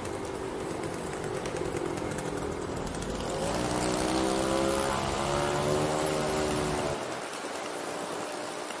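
A vehicle engine accelerating in city traffic, its pitch climbing twice from about three seconds in, over a steady wash of traffic noise; the engine sound cuts off about a second before the end.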